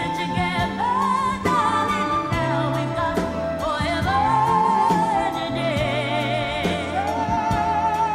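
A male singer's ballad sung live with a full band accompanying, the melody carried in long held notes with vibrato.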